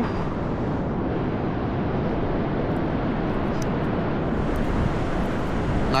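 Steady, even rush of surf breaking on the beach, with a deep low rumble: a rough sea still running high after a storm surge.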